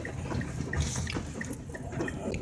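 Car creeping through standing floodwater: a low rumble with water swishing and splashing under the tyres, heaviest about a second in. Through it a light ticking about three times a second, the car's turn signal.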